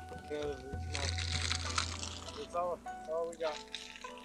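Background music with steady held notes. About a second in, a burst of rushing hiss lasts about a second and a half, and short rising-and-falling voice-like calls come and go, more of them near the end.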